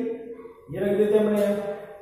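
A man's voice drawing out long syllables at a steady pitch: one tails off at the start, and after a short pause a second long held sound starts under a second in and lasts to near the end.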